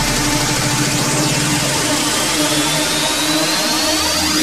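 Hard techno at a breakdown: the kick and bass drop out shortly after the start, leaving a held synth note under a wash of noise, with a thin sweep rising slowly through the second half as the track builds up.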